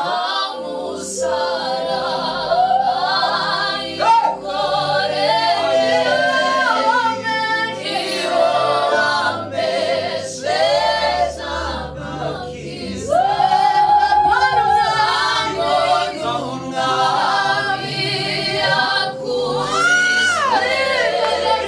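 A small mixed group of young singers, three women and a man, sing a gospel song together into microphones, several voices at once with long held notes.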